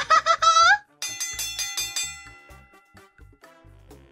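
A woman's voice ends a line with a short laugh. About a second in, a bright bell-like chime sounds and rings out, fading over a couple of seconds: a scene-transition sound effect.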